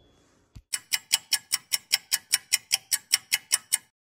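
Ticking-clock sound effect marking a time skip: fast, even ticks, about five a second, starting just under a second in and stopping shortly before the end. A brief low thump comes just before the ticking starts.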